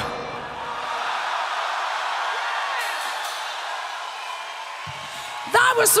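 Large open-air festival crowd cheering and whooping after a heavy metal band's music cuts off abruptly at the start.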